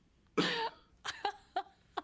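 A person laughing in short bursts: one longer, louder burst about a third of a second in, then a few brief breathy ones.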